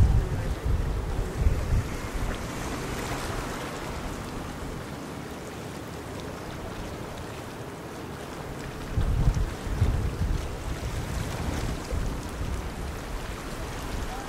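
Wind buffeting the microphone in gusts, in the first couple of seconds and again about nine seconds in, over a steady wash of choppy water.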